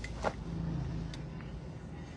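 Inside a car, a steady low hum from the idling car engine, with a short sharp click or rustle about a quarter second in and a fainter click about a second later as the driver handles her seatbelt.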